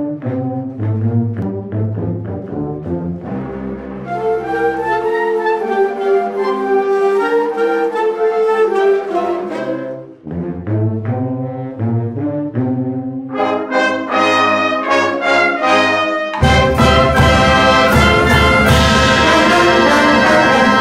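School concert band of woodwinds and brass (flutes, clarinets, saxophones, trumpets, sousaphones) playing a piece: short repeated bass notes under the melody at first, then a held, flowing melody, with the full band coming in louder about sixteen seconds in.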